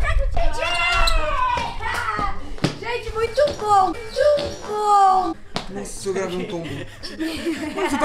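Excited voices shouting and exclaiming in high, swooping tones, with a few sharp knocks.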